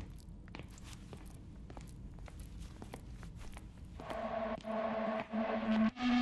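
Quiet opening of a music video's soundtrack: faint clicks and knocks over a low hum, then about four seconds in a steady held musical tone comes in as the song's intro begins.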